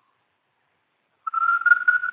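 Dead silence, then a little past halfway a thin, steady whistle-like tone that rises slightly in pitch and runs on into the next words.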